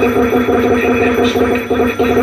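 Experimental electronic noise music played live through effects pedals: a loud, distorted, echoing drone with a pattern that keeps repeating.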